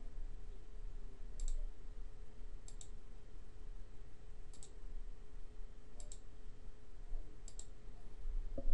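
Computer mouse button clicks, about five, each a quick press-and-release pair, spaced a second or two apart over a faint steady hum.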